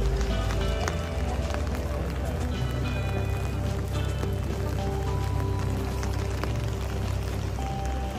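Music with held notes at shifting pitches over a steady low rumble and street noise.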